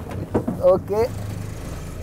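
Auto-rickshaw engine running with a steady low hum, and a short burst of a voice in the first second.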